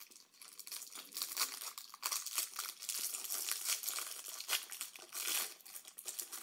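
The plastic wrapper of a Little Debbie Swiss Roll crinkles and tears as it is pulled open by hand: a dense, uneven run of sharp crackles that gets louder after about a second.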